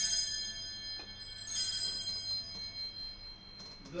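Altar bells rung at the elevation of the consecration: a bright, high ring right at the start and a second ring about a second and a half in, each fading away.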